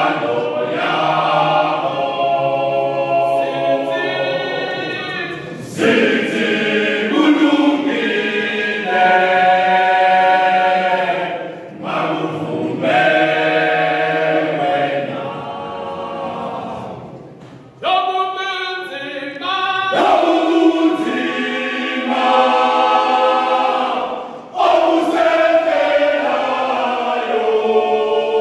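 Zulu male voice choir singing a cappella in close harmony. The song moves in phrases of about six seconds, each ended by a short breath.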